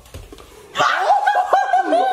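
A person's high-pitched laughter, breaking out in short rapid bursts about a second in.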